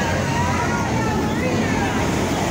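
Busy street noise: a steady traffic rumble mixed with the chatter of passers-by in a crowd.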